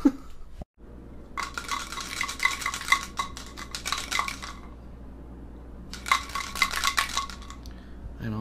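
Kitchenware clinking and clattering in two bouts of rapid ringing knocks, the second bout shorter, over a steady low hum.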